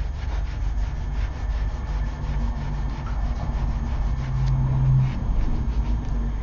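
A fingertip rubbing chrome powder into a cured, tack-free gel top coat on a nail tip, with quick, steady back-and-forth strokes: the burnishing that gives the chrome its mirror finish.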